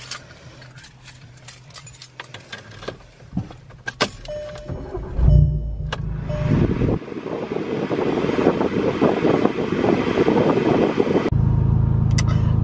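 Keys jangling and small clicks in the cabin of a big-turbo Volkswagen GTI. About five seconds in comes a short low rumble as the engine is started, and then it runs with a steady rushing sound that slowly gets louder.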